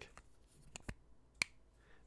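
Soft, sharp clicks of a Diplomat Magnum fountain pen's plastic snap cap being pushed on, two clear ones a bit under a second in and again about half a second later; a quiet click, though the cap holds firmly.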